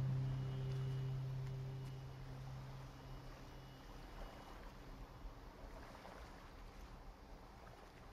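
A low steady hum fades away over the first four seconds, leaving only faint, even background noise.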